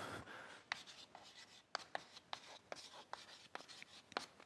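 Chalk writing on a blackboard: faint, irregular taps and short scratches as a word is chalked out.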